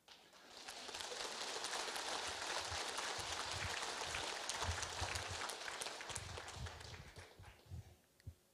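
Large audience applauding, a dense patter of many hands clapping that starts about half a second in and dies away near the end.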